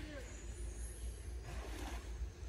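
A steady low rumble, like wind on the microphone, with a short rising-and-falling voice sound right at the start and a brief rush of noise near the end.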